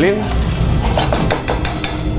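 A metal spoon stirring prawns and cream in a frying pan on a gas burner. From about half a second in there is a quick run of clicks and taps of the spoon against the pan, over a light sizzle.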